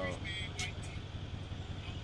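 Steady low rumble of vehicle noise, with faint voices about half a second in.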